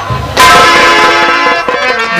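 A loud, bell-like musical chord from the stage accompaniment strikes about half a second in and rings on steadily, a dramatic sting after a line of dialogue.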